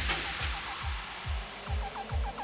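Background music: an electronic track with a steady kick-drum beat and short repeated synth notes, with a noisy whooshing swell fading out in the first second.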